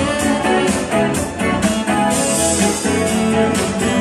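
Live band playing amplified music, led by guitar, over a steady beat of about two hits a second.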